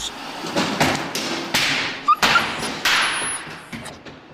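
Water-wheel-driven trip hammer striking hot iron on an anvil, a series of heavy thuds about two a second.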